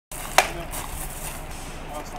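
A single sharp crack about half a second in: a sword blow landing on a shield or armour during a bout of armoured sword fighting, over a steady low background hum.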